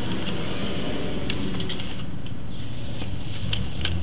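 Steady low hum with a few faint light ticks, as a sewer inspection camera's push cable is drawn back through the pipe.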